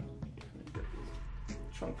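Biofoam filter pads in a plastic holder being dunked in a bucket of water: short splashes and knocks of plastic against the bucket, over quiet background music.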